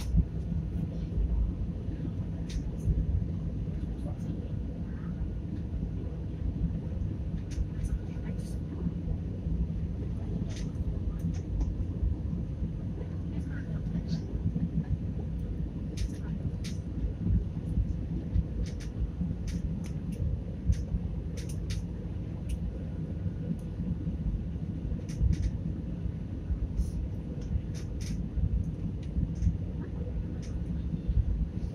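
Airliner cabin noise on approach: a steady low rumble of engines and airflow, with scattered faint clicks over it.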